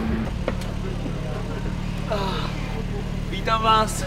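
BMW M4 Competition's twin-turbo inline-six idling steadily, with a short click about half a second in and brief voices near the middle and the end.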